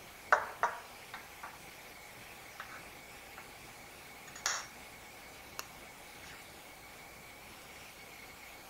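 Glassware and a plastic wash bottle handled on a tiled bench. Two sharp glassy clicks come close together within the first second, followed by a few lighter taps, a short scraping rustle around the middle and one more click. A faint steady high tone runs underneath.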